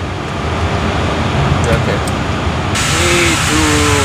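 Steady cockpit air noise with the APU running: a low rumble under an airflow hiss. The hiss turns suddenly louder and brighter about three seconds in.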